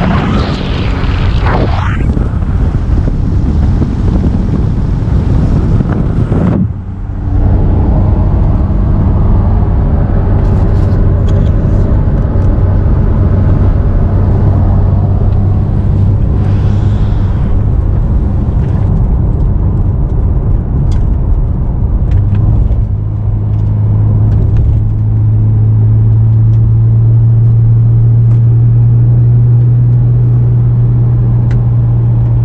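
Wind rushing over the microphone as the car drives. Then, from inside the cabin, the 2015 Porsche 911 4S's naturally aspirated 3.8-litre flat-six runs steadily while the car is driven gently on cold oil. Its pitch steps up a little about three quarters of the way through.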